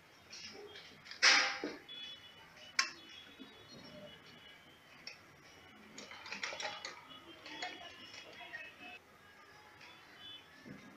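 Cloth being handled and rustled at a sewing machine, loudest in a short sharp rustle about a second in, with a single click just before three seconds and softer handling sounds later.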